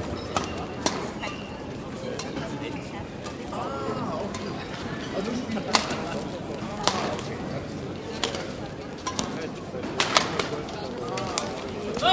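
Badminton rally: rackets striking the shuttlecock with sharp, short cracks at irregular intervals, several in a row, over the murmur of an indoor crowd.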